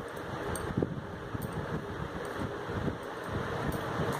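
Irregular soft thumps and rustling of hands pressing dough and setting the pieces down on a tray, over a steady background hiss.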